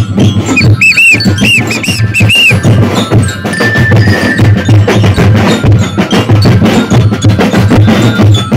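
Festival street drum corps playing a fast, loud beat on bass drums, snare drums and tenor drums. A run of short whistle blasts from the band leader comes over the drums in the first two to three seconds.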